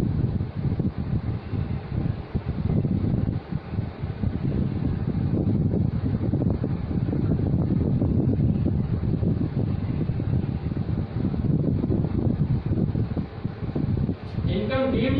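Low, fluctuating rumble of moving air buffeting the microphone, steady throughout with brief dips.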